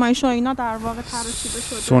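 A voice speaking, trailing off, then a steady hiss lasting just under a second near the end.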